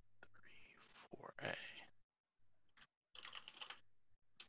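Faint, quick run of computer keyboard key clicks, a little over half a second long, about three seconds in, with a faint murmur of breath or voice earlier.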